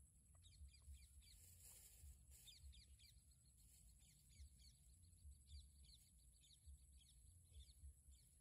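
Near silence, with faint small-bird chirps repeating two or three times a second over a low rumble.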